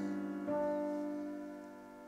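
Acoustic piano holding a deep, full jazz chord that rings and slowly fades, with a few higher notes struck about half a second in.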